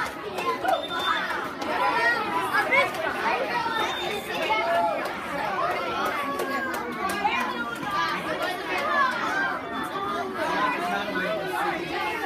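Crowd chatter of many children's voices talking and calling out at once, with no single voice standing out, and a few short clicks.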